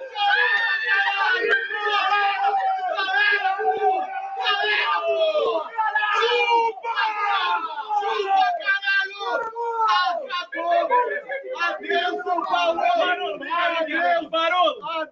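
A small group of men shouting and cheering excitedly together, celebrating a goal, with several loud voices overlapping throughout.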